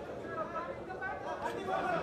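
Faint background chatter of several people talking, much quieter than the close voice on either side.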